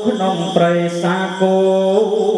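Khmer smot chanting: a young Buddhist novice monk's solo, unaccompanied voice holding long notes that step between pitches a few times.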